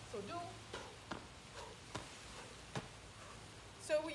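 Sneakers landing on asphalt in a series of forward broad jumps: four light, short thuds spread over about two seconds.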